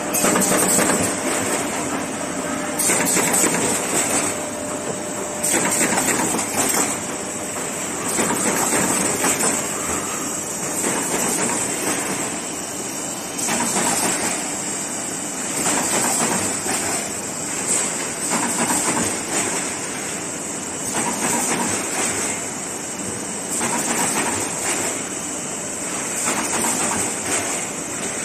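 Corrugated-board carton machinery running: a steady mechanical noise with a high hiss that swells and eases about every two and a half seconds.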